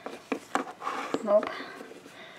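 A few light clicks and taps of plastic Littlest Pet Shop figurines being handled and set down on a tabletop, with a child's voice saying "Nope. Oh."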